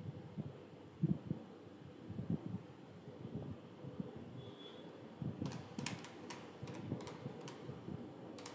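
Faint handling noise and soft knocks while writing with a stylus on a tablet, followed in the second half by a quick run of about ten sharp, separate taps or clicks.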